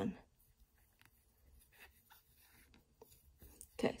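Faint, intermittent scratching and rubbing of a crochet hook drawing yarn through the stitches.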